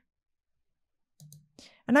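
Dead silence for about a second, then a few faint computer-mouse clicks.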